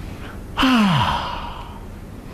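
A man's loud, drawn-out sigh, an "ahh" that starts about half a second in, falls steeply in pitch and trails off in breath.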